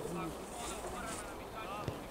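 Distant calls and shouts of players and coaches across an open pitch, with wind on the microphone and two sharp thumps of a football being kicked, one at the start and one near the end.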